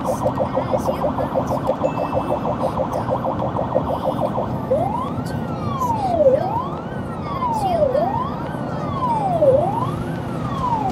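Ambulance siren heard from inside the cab while responding. It sounds a rapid pulsing tone, then about four and a half seconds in switches to a slow wail that rises and falls about every second and a half, over a steady low rumble.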